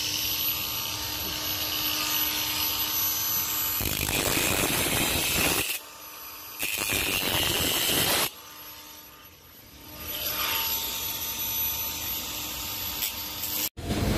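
Handheld angle grinder with a cut-off disc running and cutting through the steel wires of a wire-mesh cable tray. It is louder and harsher twice a few seconds in as the disc bites the wire, and dips twice in the middle before running on.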